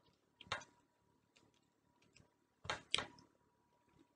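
Sharp clicks and crackles from handling and eating fresh tamarind pods: one crack about half a second in, two more close together near three seconds, and faint ticks between.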